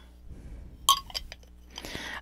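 Clinks and clicks of a crystal-infuser water bottle being handled as its bottom section is taken off: one sharp clink with a short ring about a second in, then a few lighter clicks.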